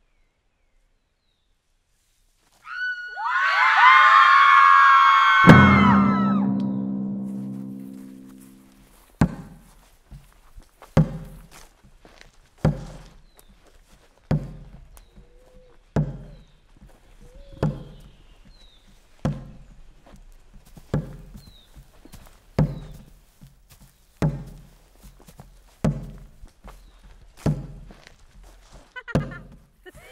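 Film score: a cluster of many high, gliding tones swells in and fades, and a deep booming hit rings out for a few seconds. Then a slow, steady drum beat follows, one low hit about every 1.7 seconds.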